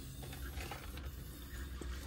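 Faint hiss and trickle of liquid running from a boiler drain valve where the treatment injector adapter has popped off. A steady low hum runs underneath.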